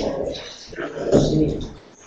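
Short, indistinct voice sounds over a video-conference audio link, with no words clear enough to make out.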